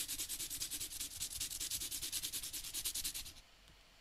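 Pencil point rubbed back and forth on the coarse sandpaper of a sharpening pad, a quick, even run of dry scraping strokes as the lead is sanded to a long tapered point. The scraping stops about three and a half seconds in while the pencil is twisted.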